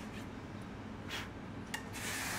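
Faint handling sounds of a small hand tool working at the nut of an electric guitar: one short scrape about a second in, then a light click.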